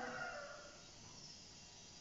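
Near silence: quiet room tone in a pause between a man's spoken words, with the end of his last word fading out in the first half second.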